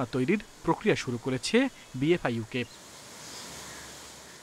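Someone speaking Bengali for the first two and a half seconds or so, then a faint, steady hiss of noise for the rest.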